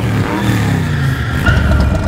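A sports car engine running loud, under film score music.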